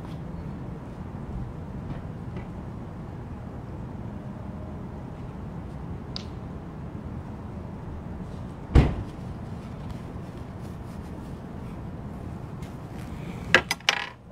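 Steady low background rumble with no speech, broken once about nine seconds in by a single loud, sharp knock. A few clicks and knocks follow near the end.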